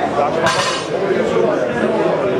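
A single sharp metallic clink about half a second in, over steady crowd chatter in a large room.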